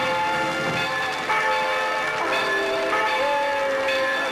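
A peal of church bells ringing, several bells overlapping with new strikes about once a second. It is a sound effect played by the show's direction as its verdict on the act, a sign of approval.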